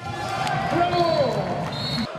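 Handball crowd cheering and shouting as a seven-metre penalty is scored, with one long drawn-out shout standing out and dropping in pitch partway through.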